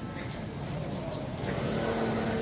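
Street traffic: a car's engine and tyres running past, growing a little louder toward the end.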